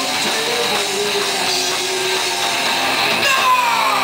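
Live rock band playing loud, with electric guitars to the fore; a note is held through the middle and several pitches slide downward near the end.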